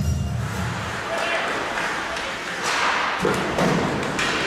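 Live ice hockey rink sound: skate blades scraping the ice, knocks of sticks, puck and boards, and players' voices, with the scraping and knocks loudest near the end. Background music with a heavy bass stops just after the start.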